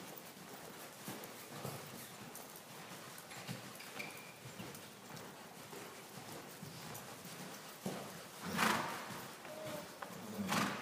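Hoofbeats of a two-year-old colt cantering on the sand footing of an indoor riding arena. A loud rushing burst of noise comes near the end.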